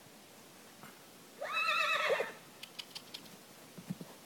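A horse whinnying once: a wavering call just under a second long that rises at the start and drops away at the end, followed by a few faint light clicks.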